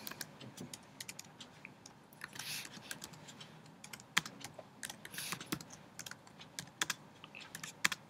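Typing on a computer keyboard: quick, irregular key clicks with short pauses between runs of keystrokes.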